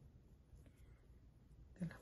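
Near silence, with faint scratching of a paintbrush dabbing glue onto the toe of a fabric slip-on shoe. A woman's voice starts just before the end.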